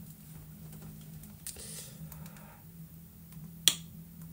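A low steady hum with a faint rustle partway through, and one short sharp click near the end.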